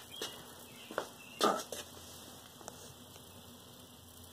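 A few soft, separate clicks and rustles from the camera being handled and moved, over a quiet background.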